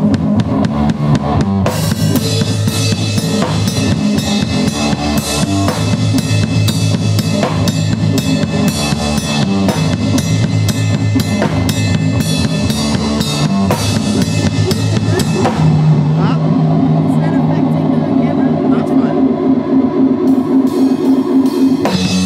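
Live band of drum kit and electric guitar playing loud, with rapid drum and cymbal hits. About two-thirds of the way through, the drumming thins out and sustained, wavering guitar notes carry on.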